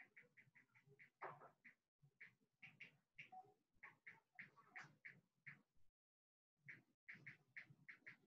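Near silence, with faint short animal calls repeating several times a second.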